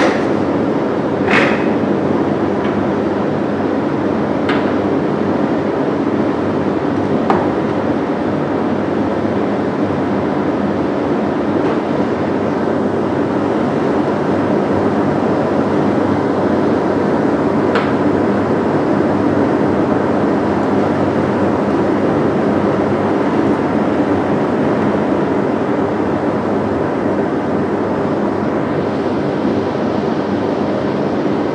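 Laminar flow hood's blower fan running with a steady hum. A few light clicks of glassware and tubes being handled, the loudest about a second and a half in.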